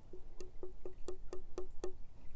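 A fingertip tapping on the ice skin frozen over a concrete bird bath, eight quick taps at about four a second, each with a short hollow ring.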